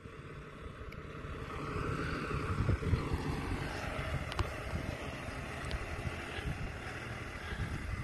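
Ram dually pickup towing a loaded flatbed trailer driving past on the road: engine and tyre noise swell over the first few seconds, then slowly fade as it moves off.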